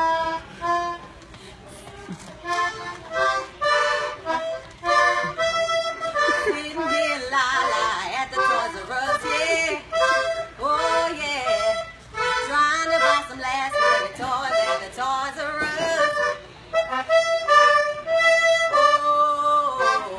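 Toy accordion played in short, repeated reedy chords that start and stop every second or so.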